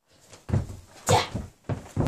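Karate kata moves done at speed: three sharp, loud bursts about half a second apart, each a forceful exhalation with the swish of a cotton gi as the strike lands.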